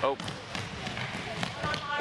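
Ball kicks and bounces and players' running steps on a hardwood gym floor, with a short man's exclamation at the start and faint voices.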